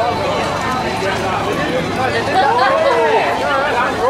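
Crowd chatter: many people talking at once in overlapping voices, with no single speaker standing out until a nearer voice becomes clearer about halfway through.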